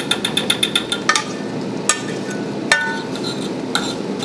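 A metal utensil clinking rapidly against a frying pan while scrambling eggs, about ten quick taps in the first second, then a few single knocks spaced out over the rest, over the steady sizzle of the eggs frying.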